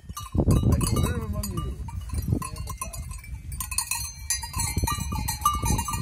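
Bells on a flock of sheep clinking and ringing as the animals crowd close, with a sheep bleating with a wavering call about a second in, over a low rumble on the microphone.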